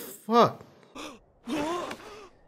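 A man's voice making short wordless sounds: a brief strong one about half a second in, a shorter one a second in, and a longer drawn-out one in the second half.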